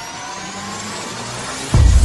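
Electronic intro sound design for an animated logo: several tones sweep slowly upward in a rising build, then a sudden loud bass-heavy hit lands near the end.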